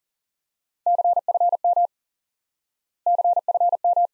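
Morse code keyed at 40 words per minute as a steady single-pitch sidetone: two quick groups of dits and dahs, about a second each and two seconds apart, sending the abbreviation CFM ("confirm") twice.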